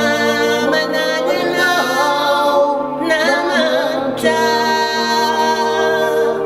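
A woman and a man singing together in harmony, over sustained keyboard chords.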